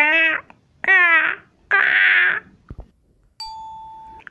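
Three 'kaa' caws for a cartoon crow, each about half a second and falling in pitch, the last one raspier. About three and a half seconds in comes a single steady chime-like ding that slowly fades.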